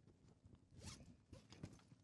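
Faint rustling and a few light scraping strokes of a person handling things, against near-silent room tone.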